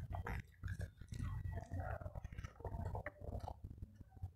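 A person chewing a mouthful of rice and vegetable bhaji, close to the microphone, in irregular spurts with small clicks.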